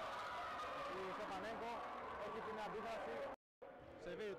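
People's voices talking in a sports hall, cut off by a brief total dropout to silence about three and a half seconds in, where the video is edited.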